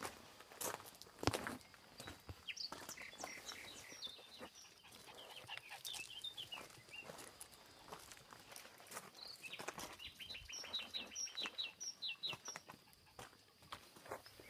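Small birds chirping in quick runs of short, high notes. A couple of sharp clicks or knocks come about a second in, the loudest sounds here.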